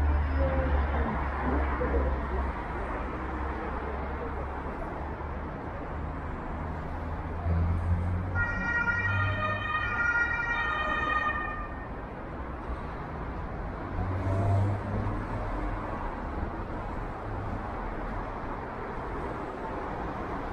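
Steady city street traffic rumble, with an emergency-vehicle siren sounding for about three seconds a little before the middle.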